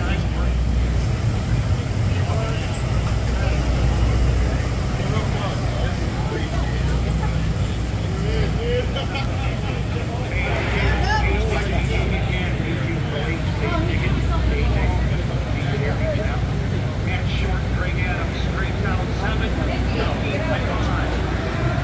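A steady low rumble runs throughout, with people talking over it in the background.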